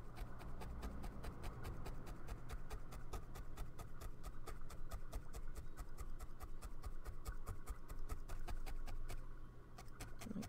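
Felting needle stabbed rapidly and repeatedly into wool roving on a felting mat: an even run of sharp little pokes, several a second, stopping just before the end.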